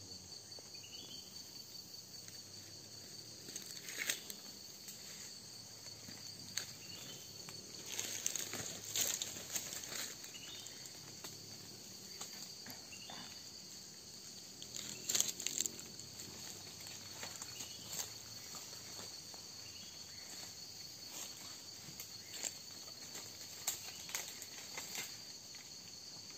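Rainforest insect chorus holding a steady high drone, with scattered crackles and rustles of dry leaves and twigs, loudest about four seconds in, around eight to ten seconds, and at fifteen seconds.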